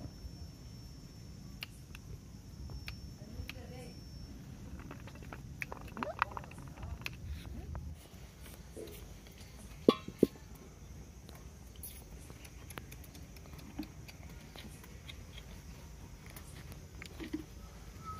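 Metal kadai being handled and set on a brick wood-fire stove, with two sharp metallic clanks close together about ten seconds in. A low rumble runs under the first part and stops about eight seconds in, and small scattered clicks are heard throughout.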